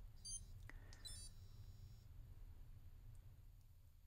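Faint electronic beeps from a Garmin Fenix sports watch as its strength-training set timer is started: a short beep near the start and another about a second in, with a faint button click between them.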